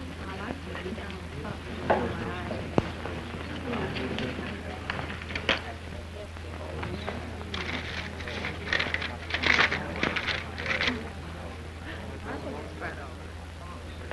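Indistinct voices with a few sharp clicks, over the steady low hum of an old film soundtrack.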